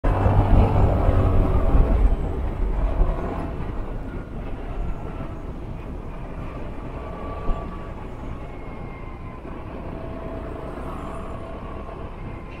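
Motor scooter on the move: wind rushing over the microphone with the scooter's engine and road noise, loud for the first two seconds or so, then easing off steadily as the scooter slows. A single short knock comes about halfway through.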